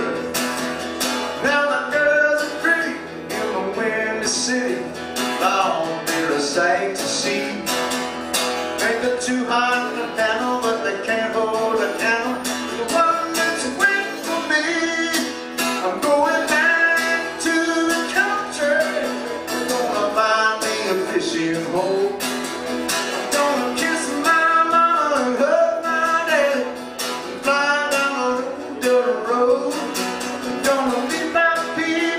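A man singing while strumming a steel-string acoustic guitar fitted with a capo, one voice and one guitar playing continuously.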